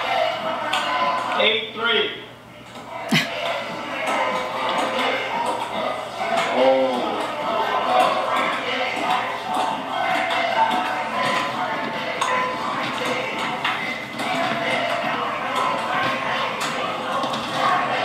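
Table tennis rally: the ping-pong ball clicks sharply and irregularly off paddles and table, over a steady layer of background voices and music.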